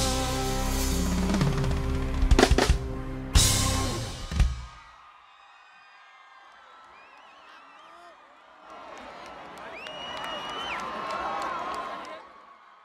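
A live band ends a song with a held chord and a few loud closing drum hits; the music stops about four and a half seconds in. A concert crowd then cheers and whistles, swelling in the last few seconds with one long held whistle.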